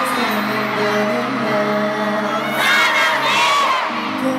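Concert crowd of fans screaming and cheering over sustained music, with a louder burst of high-pitched screams from about two and a half seconds in.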